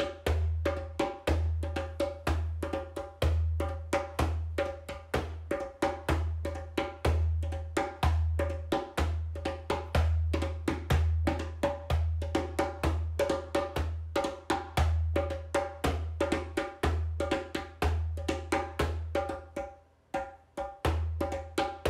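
Percussion music: fast, steady strikes on a pitched wood-block-like or hand-drum instrument, about four a second, over a deep bass tone that pulses underneath.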